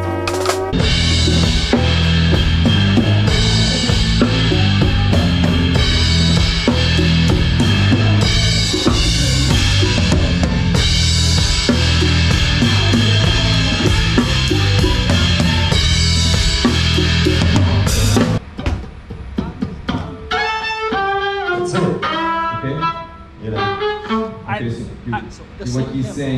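A band playing loud, with the drum kit and its cymbals up front, stopping abruptly about three quarters of the way through. After that a voice is heard over quieter stage sounds.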